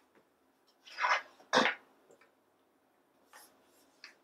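Footsteps in slide sandals slapping and scuffing on a tile floor: two short steps a little after a second in, the second with a dull thump.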